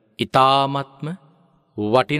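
A Buddhist monk's voice intoning a drawn-out, chant-like phrase in the sing-song style of a sermon; it breaks into a short pause, and speech resumes near the end.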